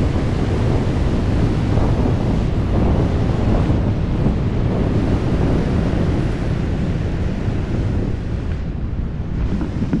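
Wind rushing loudly and steadily over the camera microphone during wingsuit flight, easing slightly near the end.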